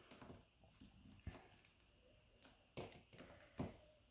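Near silence with a few faint, scattered taps, the clearest a little over a second in.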